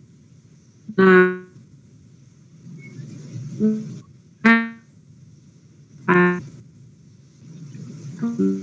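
Single musical notes sounded one at a time, four in all, a second or two apart; each starts sharply and fades within about half a second. A faint steady hiss runs underneath.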